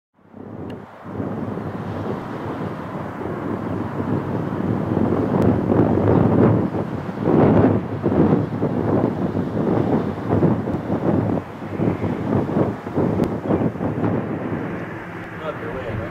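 Wind buffeting the microphone: a loud, irregular rumble that builds over the first few seconds, peaks midway and slowly eases off.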